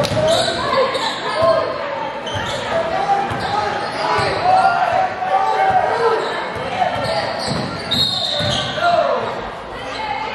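Basketball being dribbled on a hardwood gym floor during live play, with voices calling out in the echoing gym.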